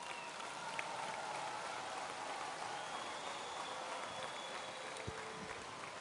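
Faint, steady audience applause from a crowd heard at a distance from the lectern microphone, an even crackling patter.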